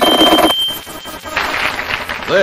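Harsh electronic noise music: a dense, rapidly pulsing noise texture with a steady high beeping tone, like an alarm, that cuts off abruptly about half a second in, leaving a thinner hiss and the high tone.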